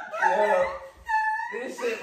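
People laughing and talking excitedly, with one brief, steady, high-pitched whine about a second in.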